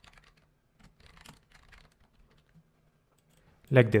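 Computer keyboard typing: a quick run of faint keystrokes that stops about two and a half seconds in.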